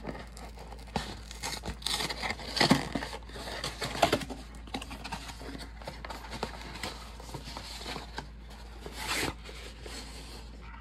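Cardboard USPS Priority Mail flat rate box being torn open at one end, with irregular tearing, crinkling and scraping of cardboard and a few sharp clicks. It is busiest in the first few seconds and rises again near the end as the flap is pulled back.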